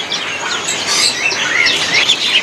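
Many caged songbirds chirping and calling at once: a dense mix of short, high chirps and whistles overlapping one another.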